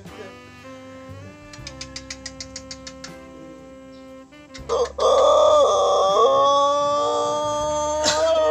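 A rooster of the long-crowing ayam ketawa type gives a loud, long drawn-out crow starting about four and a half seconds in and held to the end. Before it, quieter background music with held notes and a run of quick ticks.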